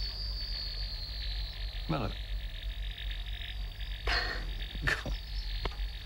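An insect's mating call from a film soundtrack: a steady high-pitched whine over a rapid, fine pulsing chirr, with short bits of speech about two, four and five seconds in.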